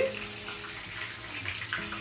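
Water running steadily from a kitchen tap.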